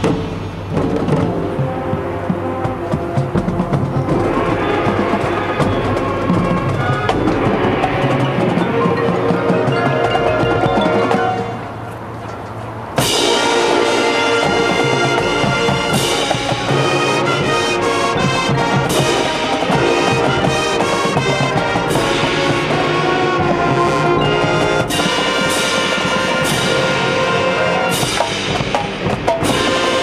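High school marching band playing its field show: brass over marching drums and front-ensemble percussion. The music drops softer briefly just before twelve seconds in, then the full band comes back in loud at about thirteen seconds, with sharp percussion hits through the rest.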